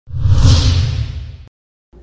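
A whoosh sound effect with a deep low rumble under it, swelling up quickly and fading away over about a second and a half before cutting to silence.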